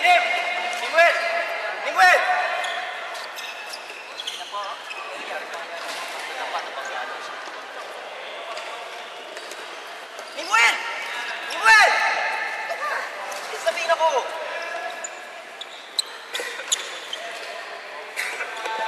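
Athletic shoes squeaking in short, arching chirps on a wooden gym floor, with a few sharp knocks, amid voices echoing in a large hall. The squeaks and knocks come in clusters near the start, about two seconds in, and again around ten to twelve seconds in.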